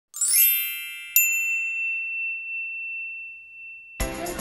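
Logo chime sound effect: a shimmering high tinkle, then a single bright ding about a second in whose tone rings on and slowly fades.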